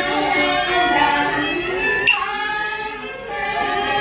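A group of women's voices chanting a Cao Dai prayer together in unison, unaccompanied. A single short sharp click cuts through about halfway in.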